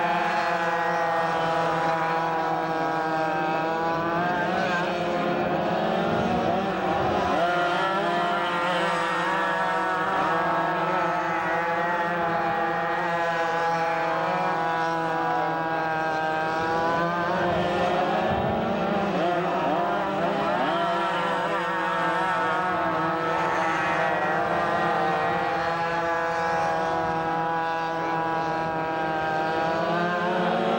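Several go-kart engines running at race speed together. Their pitch rises and falls over and over as the karts accelerate and ease off around the track.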